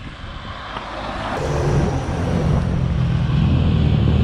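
A motorcycle and a truck approaching along the road, their engine sound growing steadily louder from about a second in as the motorcycle leans into the bend.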